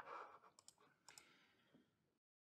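Near silence: faint room tone with a single sharp click right at the start and a few tiny ticks around the middle.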